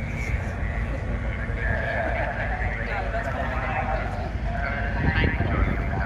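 People talking nearby, with a laugh near the end, over a steady low rumble.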